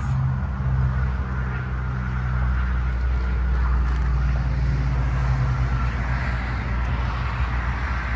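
Vehicle engine idling steadily: an even, low hum that holds throughout.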